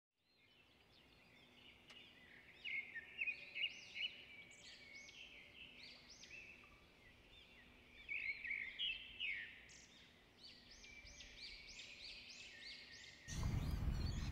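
Birds chirping: a run of many short, high, arched chirps, with louder flurries around the third and ninth seconds. About a second before the end a louder rush of noise cuts in.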